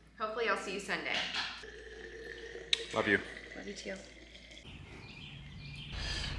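Soft, untranscribed voices, with a sharp click near the middle. About two-thirds of the way through, a low steady outdoor rumble takes over.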